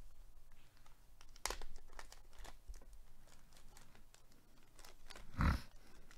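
Glossy black plastic zip-top bag crinkling and crackling in gloved hands as it is pulled open, with a sharp crackle about a second and a half in and a louder crackle with a thump near the end.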